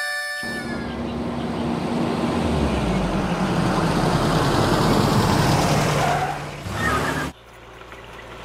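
A motor vehicle driving by: engine and road noise build up to a peak and then fall away, cutting off abruptly near the end.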